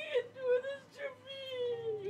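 A high-pitched voice with no clear words, holding long wavering tones that slide in pitch and fall slowly near the end, over a faint steady low tone.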